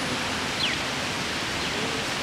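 Steady outdoor city background noise, an even hiss without distinct events, with a faint distant voice near the end.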